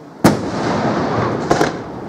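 Aerial firework shells bursting: one sharp bang about a quarter second in, followed by a loud rolling noise lasting over a second, then two more quick bangs close together about a second and a half in.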